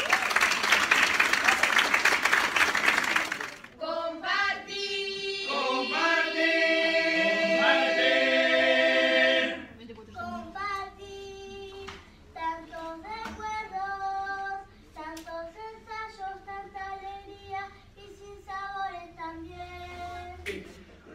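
Applause for about three and a half seconds, then a children's murga group singing together in chorus, loud at first and quieter from about ten seconds in.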